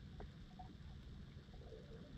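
Faint underwater ambience in a shallow seagrass bed: a steady low rumble with a few scattered faint clicks and some short low blips near the end.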